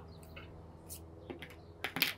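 A handful of small, sharp clicks and ticks from fingers handling a plastic pencil-lead case and drawing out a thin graphite lead, the loudest click right at the end.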